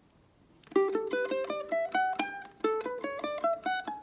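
Ukulele played one plucked note at a time in two rising major scales of about eight notes each. The first starts on G and the second starts a step higher, on A, with a low note ringing on under the first run.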